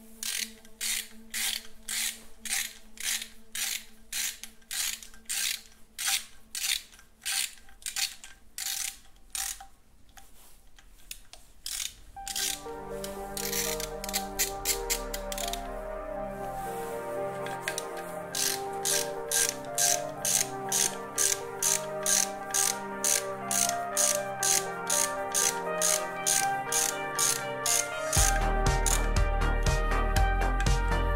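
Hand ratchet wrench clicking in short, regular strokes, about two a second, as it runs down the bolts of a VR6 engine's upper timing cover. Background music comes in about twelve seconds in and grows louder, with a bass joining near the end.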